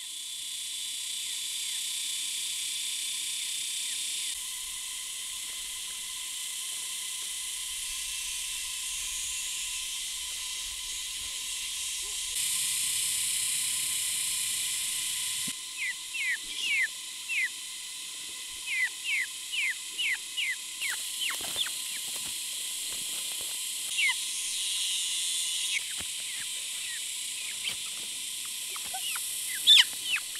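Chicken chicks peeping in runs of short, falling chirps, starting about halfway through, over a steady high hiss of rural outdoor ambience.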